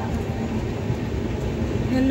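Train running, a steady low rumble of wheels on the rails heard from inside the moving coach.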